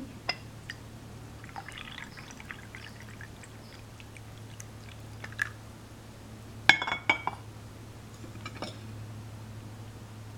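Green tea being poured from a clay teapot into a porcelain teacup, a faint trickle. About seven seconds in, one sharp ceramic clink as the teaware is set down.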